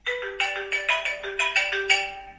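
Mobile phone ringing with a marimba-style ringtone: a quick melody of short mallet notes, several a second, starting suddenly.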